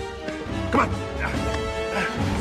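Film score with sustained held notes, over which mandrills give two short, sharp yelps about half a second apart near the middle.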